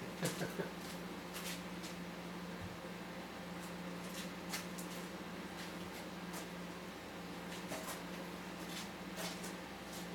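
Microwave oven running with a steady low hum, with scattered faint clicks and ticks over it.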